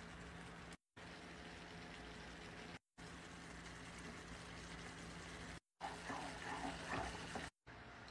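Saucepan of milky liquid boiling on a stovetop: a faint, steady bubbling hiss over a low hum, cutting out to silence for a moment several times. Louder, uneven sounds rise over it in the last two seconds.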